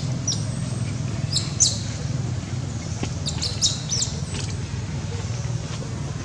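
Small birds chirping in short, high, quick calls, in clusters about a second and a half and three and a half seconds in, over a steady low hum.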